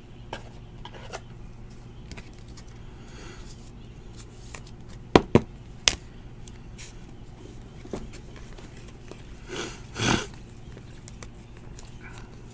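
Trading cards being handled over a steady low hum: three sharp clicks in quick succession about five seconds in, then two brief rustles near ten seconds.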